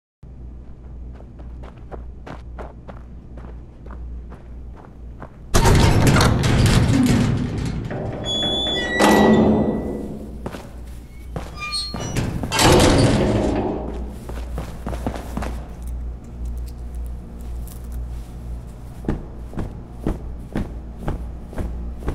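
Sound-effects intro over a low steady hum: a sudden loud noisy crash about five and a half seconds in that runs for about two seconds, a second one around nine seconds with brief high squeals, and a third about twelve and a half seconds in. After that come sparse knocks of footsteps on a hard floor.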